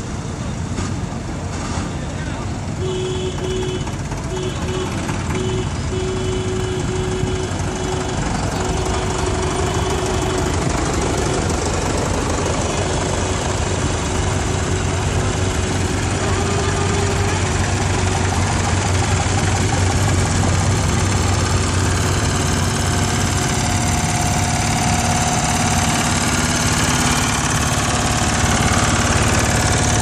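Engines of old farm tractors running at low speed as they drive past one after another, growing louder toward the end as the next tractors come close. A tone sounds on and off in short broken stretches through the first half.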